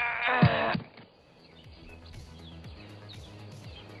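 A man's loud, wavering cry of strain that breaks off within the first second, followed by quiet background music.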